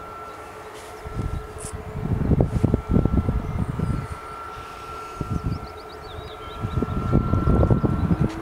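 Wind buffeting the microphone in irregular gusts, over the steady, faint whine of a distant Boeing 737's jet engines as it rolls along the runway.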